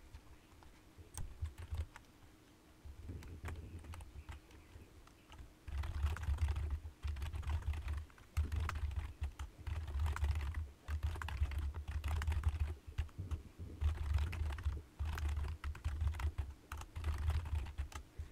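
Typing on a computer keyboard: a few scattered keystrokes at first, then quick runs of key clicks with short pauses between them, each run carrying a dull low thump.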